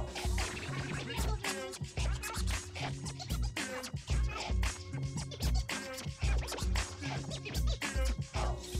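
DJ mix music: a beat with a heavy, punchy bass drum and DJ scratching, short back-and-forth sweeps cut over the track.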